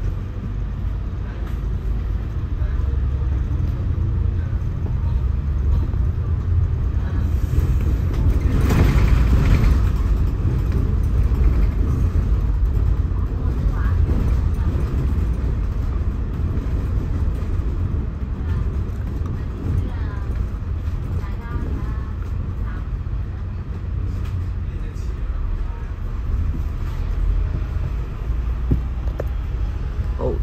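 Double-decker bus running in traffic, heard from on board: a steady low engine and road rumble, swelling into a louder rush about nine seconds in.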